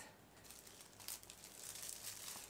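Faint crinkling of clear plastic shrink-wrap film being handled by hand, slightly louder in the second half.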